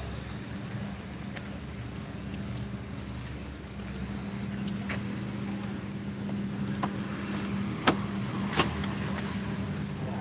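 Car engine idling with a steady low hum. Three short high beeps about a second apart come a few seconds in, and two sharp clicks near the end.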